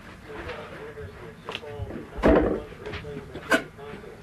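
A heavy thump about two seconds in and a sharp knock near the end, as the wooden mortar rack is shifted and handled on a carpeted floor, with a faint voice underneath.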